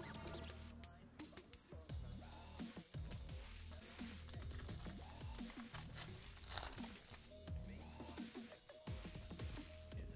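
Background music with a steady low bass line, over which a foil trading-card pack wrapper is crinkled and torn open by hand.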